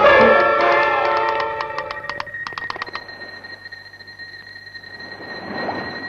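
Orchestral music fades out over the first two seconds, over a run of quick sharp clicks from a Morse telegraph key being tapped. A steady high electronic tone is left sounding over a faint low hum.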